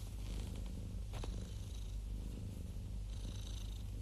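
Domestic cat purring steadily close to the microphone, with a light click about a second in.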